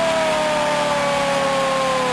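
Arena goal horn sounding after a goal: one long held tone that slides slowly down in pitch, over a cheering crowd.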